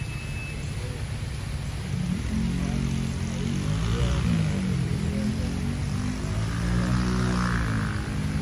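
A low engine drone builds about two seconds in and passes, its pitch rising and falling slowly, over the steady rush of water from a fountain.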